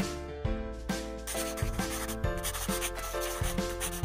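Marker-scribbling sound effect, a scratchy rubbing from about a second in, over background music with regularly spaced notes.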